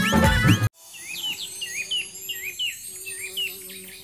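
Theme music cuts off abruptly under a second in, followed by a bird's short chirps repeating about twice a second over a faint steady hum.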